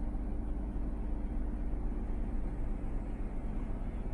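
Steady low hum and rush inside the cab of a parked 2024 Toyota Tundra, with a faint constant tone under it.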